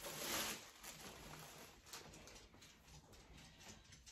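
Faint rustling and crinkling of a clear plastic bag as a shirt is unwrapped from it, loudest in the first half second, then scattered soft crackles.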